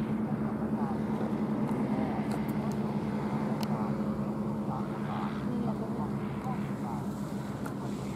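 Steady droning of a paramotor's propeller engine flying overhead, holding an even pitch.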